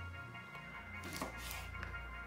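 Soft background music with a steady low pulse. A knife cutting a lemon into wedges on a bamboo cutting board gives faint taps on the wood about a second in and near the end.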